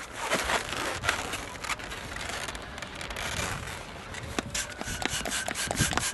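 Latex twisting balloons being handled, rubbing and squeaking against each other, with scattered small clicks that come more often in the second half.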